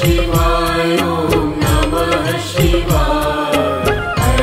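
A Hindi devotional Shiva bhajan: a chant-like sung melody over a drum beat with deep bass thumps.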